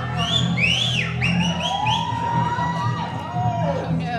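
Reception music with a steady bass line, overlaid in the first two seconds by high whistles that rise and fall in pitch, and then by a long held note.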